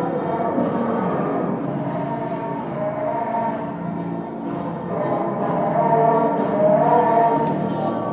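Live electronic noise/industrial music from laptop and electronics: a dense wash of layered sustained tones shifting slowly in pitch, with no beat, dipping slightly in the middle and swelling again near the end.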